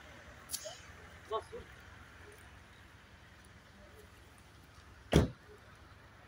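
A single sharp, loud thump about five seconds in, over a quiet background hiss, with a faint click and a brief faint voice-like sound near the start.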